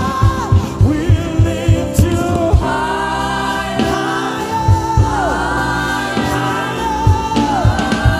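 Live gospel worship song: a man's lead voice holding long sung notes, with women's backing voices, over a band's steady drum beat that drops out for about two seconds midway and then returns.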